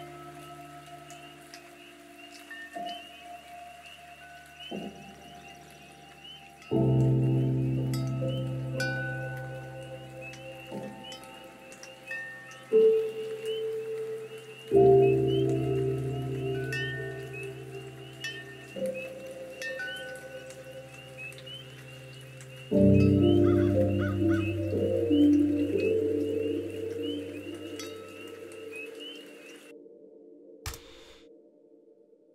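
Soft piano chords struck every few seconds and left to ring out, with a few high twinkly notes, over a steady chorus of chirping frogs from a field-recorded foley layer.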